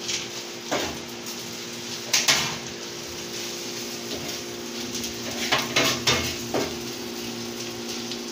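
A metal knife blade tapping and scraping on a flat stovetop griddle as meat, ham, cheese and green onion are chopped and mixed together. A handful of sharp taps come at irregular intervals over a steady low hum.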